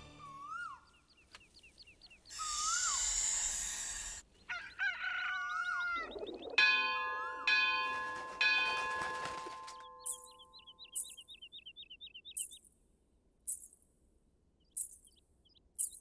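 Birds chirping and calling, with a burst of hiss about two seconds in. About six and a half seconds in a temple bell is struck, its tone ringing out and fading over about three seconds. In the second half, short high shimmering strokes come about once a second, with more chirps early on in that stretch.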